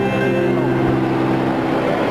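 A mixed church choir ending its song: the last chord is held and dies away about two seconds in. Under it a steady wash of crowd noise in a large hall rises.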